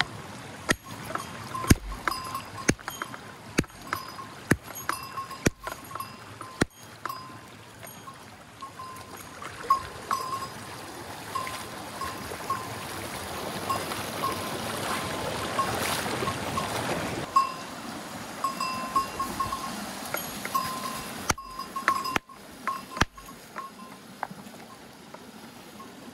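A rock hammer knocking on stones about once a second, each blow with a short metallic ring; small ringing pings keep on between the blows. Midway the rush of a fast shallow stream over rocks comes up, then fades, and a few more knocks come near the end.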